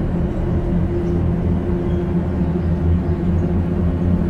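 A steady low hum made of several held low tones, unchanging throughout.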